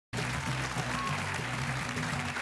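Studio audience applauding over music with a bass line.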